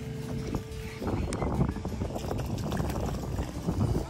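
A hooked fish splashing at the surface as it is reeled in to the bank, a dense irregular commotion starting about a second in. Background music tones play under the first second.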